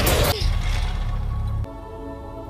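Film soundtrack: a loud rush of noise over a deep rumble, then, about one and a half seconds in, a sudden switch to a held, sustained chord of score music.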